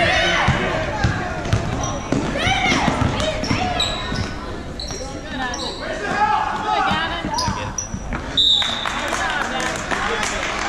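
Basketball bouncing on a hardwood gym floor amid sneakers squeaking in short high chirps, with players and spectators shouting, all echoing in the gym.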